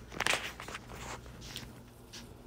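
Rotary floor machine with a red pad buffing a hardwood floor: a faint, steady low hum, with a few soft scuffs of shoe-covered feet on the wood, the loudest just after the start.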